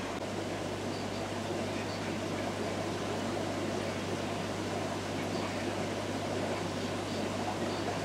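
Steady bubbling and water churn from an air-driven moving bed aquarium filter: air from the airline rises through the filter's ceramic media and is spat out of the top. A steady low hum runs beneath.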